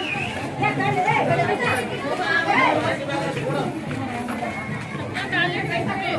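Several women's voices talking over one another in lively chatter.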